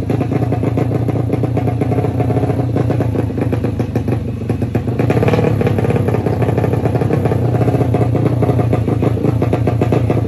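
Drag-bike motorcycle engine running at the start line, with steady rapid firing pulses and a brief rise in revs about five seconds in.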